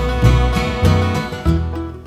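Background music: country-style acoustic guitar with steady strummed chords.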